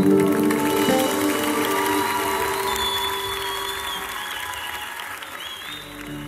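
Audience applauding at the end of a song while the band's last chord rings out and fades in the first second or so; the applause then slowly dies away.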